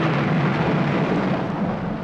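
The decaying tail of a deep, thunder-like boom hit: a noisy rumble that slowly fades, its high end dying away first.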